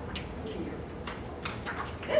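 Sheets of paper being handled and passed out, with a few short crisp rustles and clicks, over a low murmur in the room.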